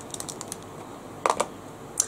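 Small plastic makeup palette cases being handled, giving light clicks and taps: a few quick ticks, then a louder clack a little past halfway.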